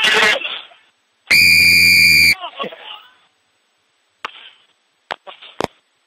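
Referee's whistle blown once, a single steady blast about a second long, stopping play. Brief speech comes before and after it, and a few short clicks come near the end.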